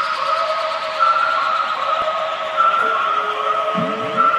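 Beatless intro of an electronic dance track: sustained synth tones repeat in phrases about a second and a half long under a hiss that slowly darkens as it is filtered down. Near the end a held tone and a few short rising synth glides come in.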